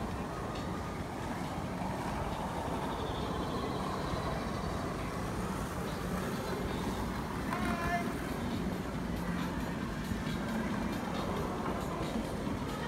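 Steady outdoor city ambience: a continuous low rumble with voices in the background, and a short higher-pitched sound about eight seconds in.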